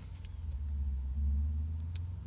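Steady low rumble of an idling car heard from inside the cabin, with a faint click near the end.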